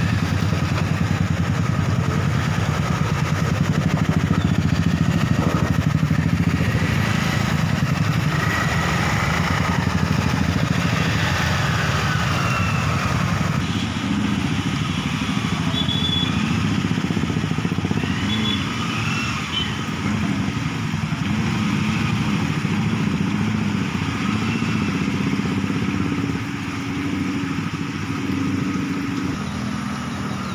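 Small motorcycle and scooter engines running at low speed as they ride through shallow floodwater, a steady engine sound throughout.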